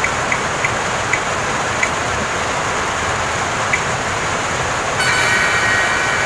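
A phone spin-the-wheel app ticking as its wheel slows to a stop, the ticks spacing out more and more and ending a few seconds in. About five seconds in, a steady electronic chime plays as the result comes up, over a steady hiss throughout.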